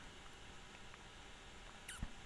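Near silence: room tone, with one brief, faint falling squeak near the end.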